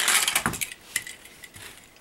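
Die-cast toy car rattling down a plastic stunt ramp and jumping off it, a quick clatter of small clicks at the start, then a few lighter clicks about a second in as it comes to rest.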